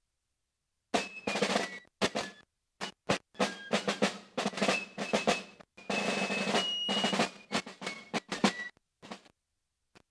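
Military band snare drums (side drums) played in fast, dense strokes and rolls. The sound starts about a second in, drops out briefly a few times and thins out near the end.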